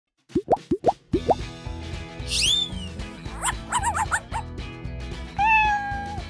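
Cartoonish intro jingle: four quick rising pop sounds, then upbeat music with a steady beat, overlaid with a swooping whistle, a run of short chirps and a held tone near the end.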